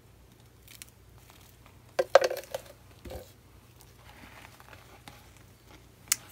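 Handling noise with plastic crinkling, a few light clicks, then a sharp clatter about two seconds in and a smaller knock about a second later, as paint tools and a plastic paint jug are put down.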